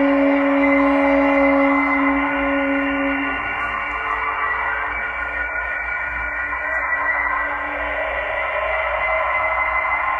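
Live free-jazz ensemble playing an ambient passage without drums: a long held horn note stops about three seconds in, over a wash of sustained droning tones.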